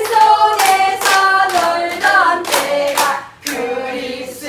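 A group of women singing a song together while clapping their hands in time, about two claps a second.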